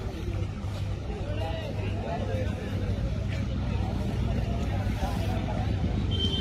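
Indistinct background voices of several people talking over a steady low rumble.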